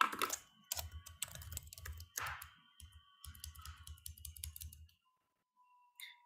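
Typing on a computer keyboard: a quick run of key clicks that stops about five seconds in.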